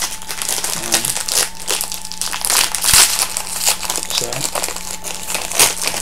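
Plastic packaging of a small blind-box collectible figure being crinkled and handled as it is opened, in irregular crackly bursts that are busiest about halfway through, with one sharp click.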